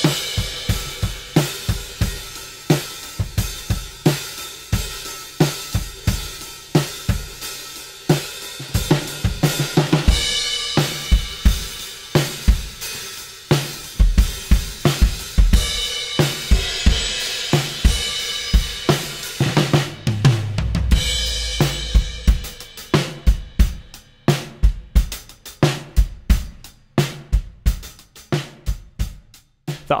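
Acoustic drum kit played with sticks: kick, snare and hi-hat strokes throughout, with cymbal crashes ringing out about a third of the way in and again around the middle, a low drum rumble a little later, and sparser, quieter hits near the end. Heard through a pair of Audix A133 large-diaphragm condenser microphones used as overheads.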